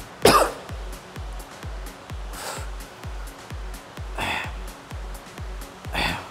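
Background music with a steady fast beat, over a man's short, forceful exhalations about every two seconds as he works a dumbbell pullover. The first breath, just after the start, is the loudest.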